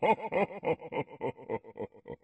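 A woman laughing: a rapid run of short 'ha' pulses, about five or six a second, that steadily fades away.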